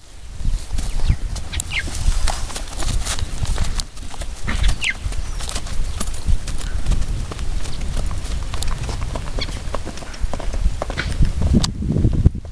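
A ridden horse's hooves clip-clopping irregularly on dry dirt, over a steady low rumble.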